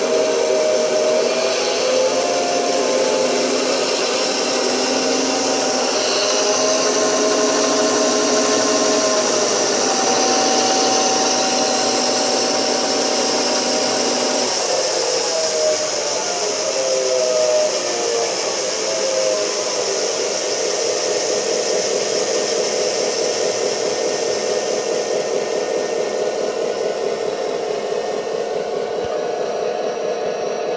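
G-scale model diesel locomotive running in place on roller stands: a steady whir of its electric motors, gearboxes and the spinning bearing rollers under the wheels. A humming tone within it shifts up and down in pitch several times in the first part, then the whir carries on evenly.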